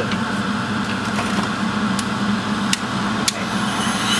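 Electric ventilation fan running steadily with a low hum. Three short, sharp clicks come in the second half.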